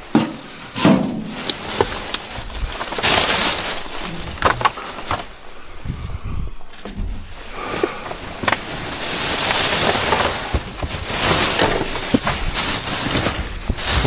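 Rummaging through rubbish in a metal skip: plastic bags and sheeting rustling and crackling as they are pushed aside, with scattered knocks and clatters of items being moved.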